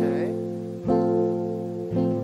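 Nylon-string classical guitar strummed, a full chord struck about once a second and left to ring between strokes.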